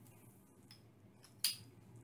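A single sharp click about one and a half seconds in, with a fainter tick before it, as a bit extension is fitted into the chuck of a DeWalt 20V cordless drill; otherwise low room noise.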